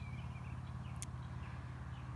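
A steady low background hum, with a few faint short chirps near the start and a single brief click about a second in.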